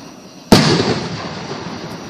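An aerial firework goes off with one loud, sharp bang about half a second in, its rumble trailing away over about a second.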